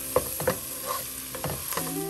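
Spiced onion, garlic and ginger masala with beaten yogurt sizzling in oil in a frying pan while a spatula stirs and scrapes it. A few sharp knocks of the spatula against the pan come through.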